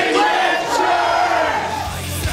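Voices yelling in one long, drawn-out shout that wavers in pitch and trails off near the end.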